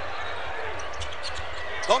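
Basketball being dribbled on a hardwood court, a series of low thumps, over a steady hubbub of a large arena crowd.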